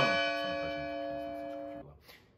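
A bell ringing out after a single strike, several steady tones fading slowly, then cut off suddenly near the end.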